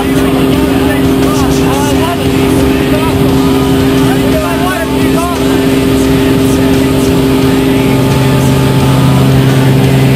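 Engine and propeller of a small single-engine, high-wing jump plane droning steadily, heard loud inside the cabin during the climb. A deeper hum joins about eight seconds in.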